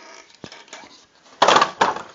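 The hinged wooden 2x3 ends of a homemade can crusher swung shut, clattering together in two quick knocks about a second and a half in, after a small click about half a second in.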